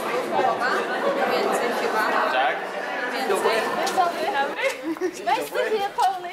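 Speech: people talking, with several voices at once.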